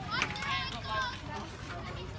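High-pitched children's voices calling out, over a steady low hum.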